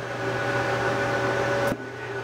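A steady mechanical whir with a faint hum, growing slightly louder and then cutting off suddenly near the end.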